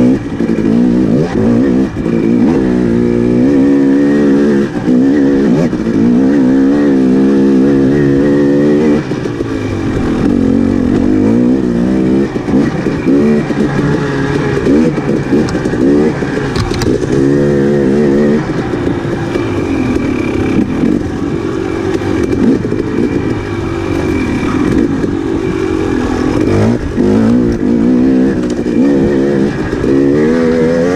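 2018 KTM 250 XC-W TPI two-stroke dirt-bike engine under way on a trail, its pitch rising and falling over and over as the throttle is opened and closed.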